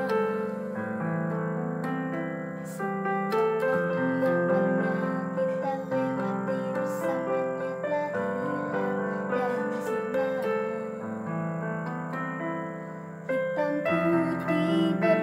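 Electronic keyboard with a piano voice playing a pop song: a melody and chords over held bass notes that change every second or two.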